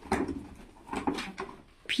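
Rustling and handling of torn wrapping paper and a cardboard toy box, in a few short crackly scrapes.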